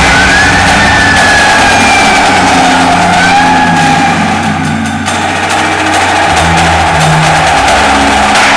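Indoor drumline and front ensemble playing a loud, sustained passage: a low bass note held throughout under changing keyboard and mallet tones with a few slow pitch glides, and only light drum strokes.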